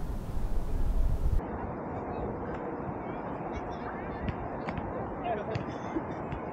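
Gusty low rumble, like wind on the microphone, that cuts off abruptly about a second and a half in. Then quieter outdoor ambience with faint, distant voices of players calling across a grass field and a few light clicks.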